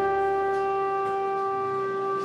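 Music: one long, steady note held by a wind instrument.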